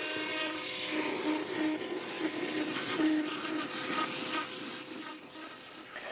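Hydrovac digging: high-pressure water from the digging wand blasting the soil while the truck's vacuum dig tube sucks up the slurry. It makes a steady hiss of rushing water with a faint hum under it, played at double speed.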